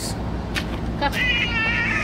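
A toddler's high-pitched, drawn-out vocal sound, starting about a second in and lasting about a second, over a steady low background rumble.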